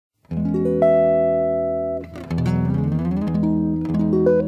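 Instrumental soul-jazz music opening with a guitar playing ringing chords, their notes entering one after another about half a second in and fading away. A second chord follows just after two seconds in, with a low bass underneath.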